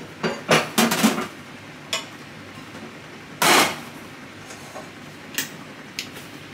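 Kitchen clatter of dishes and utensils being handled on a counter: a quick run of knocks and clinks in the first second, a single knock near two seconds, a louder, longer clatter about halfway through, and one last click near the end.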